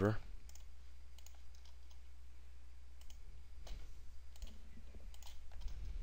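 A few scattered computer mouse clicks over a steady low hum.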